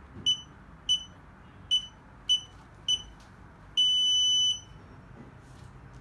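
A fingerprint access reader's electronic buzzer beeps while fingerprint data is copied into it from a USB stick. Five short high beeps come at roughly half-second to one-second intervals, then one longer beep of the same pitch about four seconds in.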